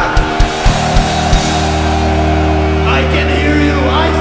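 Live heavy metal band: about six heavy, punched drum-and-bass hits in the first second and a half, then a sustained low distorted guitar and bass chord ringing on.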